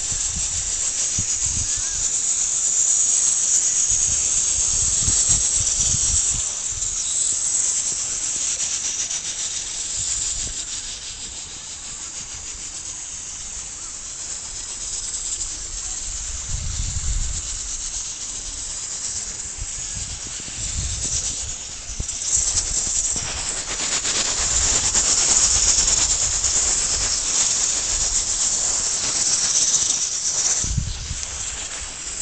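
Steady high-pitched outdoor hiss, fading down through the middle and swelling again in the last few seconds, with irregular low rumbles of wind and handling on a phone microphone.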